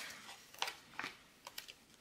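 A few faint, scattered ticks and rustles of paper planner sticker sheets being handled.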